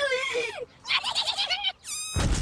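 A high-pitched, squeaky cartoonish voice: a gliding squeal, then a fast run of short giggle-like chirps, ending in a quick falling whistle.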